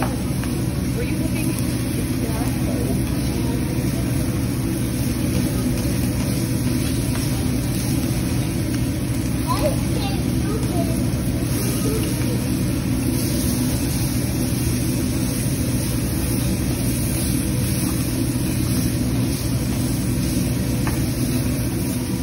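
Busy teppanyaki-grill ambience: a steady low fan drone and the chatter of diners, with food sizzling on the hot steel griddle.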